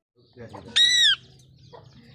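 A rose-ringed (Indian ringneck) parakeet gives one short, loud call, rising then falling slightly in pitch, about a second in.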